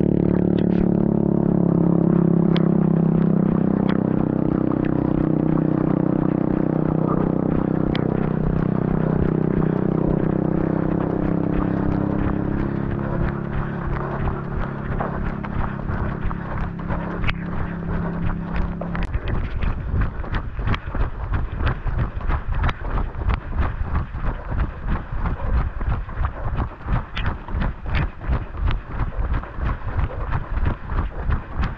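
A runner's footfalls on a paved road, picked up by a body-worn camera as a steady rhythm of about three knocks a second. Under them, for the first two-thirds, a steady low drone that cuts off suddenly.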